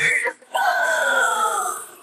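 Isolated female metal vocals with no instruments: the end of one phrase, a brief break, then one long held note that falls slightly in pitch.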